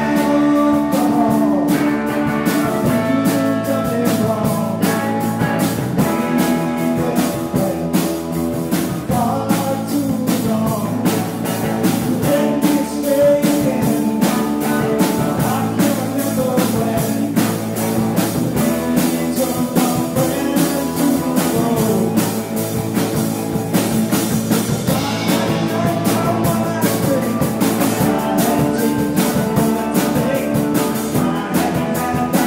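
Live band playing an upbeat song on electric and acoustic guitars with a drum kit, launching in at once on the count-in and keeping a steady beat.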